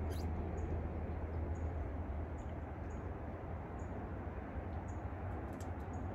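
A small bird gives short, high, falling chirps, faint and repeated roughly once a second, over a steady low background rumble.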